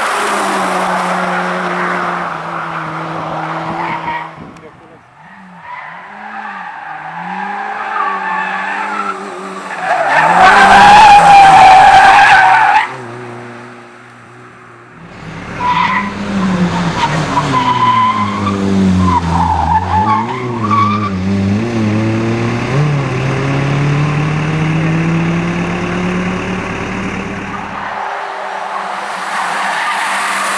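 Suzuki Swift rally car's engine revving hard through bends, its pitch climbing and dropping with throttle and gear changes, with tyres squealing. The sound cuts between several separate passes and is loudest for a couple of seconds in the middle.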